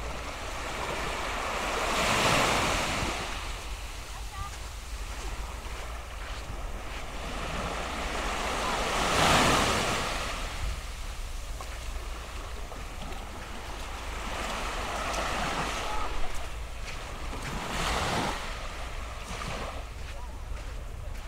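Small waves breaking and washing up a sandy beach: a steady wash of surf that swells four times, the loudest about nine seconds in.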